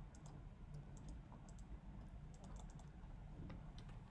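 Faint, irregular typing and clicking on a computer keyboard, over a low steady room hum.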